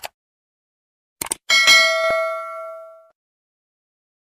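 Subscribe-button sound effect: a brief burst, then two quick clicks a little over a second in, followed by a bright bell ding that rings on and fades out over about a second and a half.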